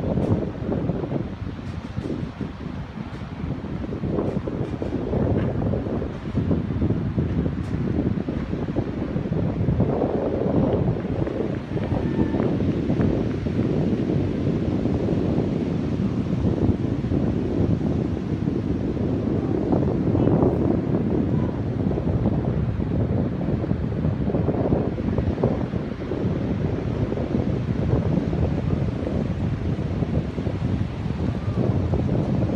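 Wind buffeting the microphone in a loud, fluctuating rumble, with ocean surf washing behind it.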